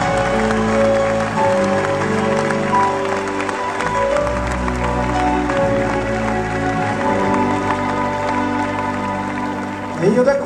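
Live rock band playing an instrumental passage between sung lines: held chords over bass and drums, with the chords changing every second or two.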